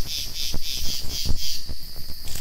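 Insects chirping in a steady pulsing rhythm, about four chirps a second, with a few faint low knocks.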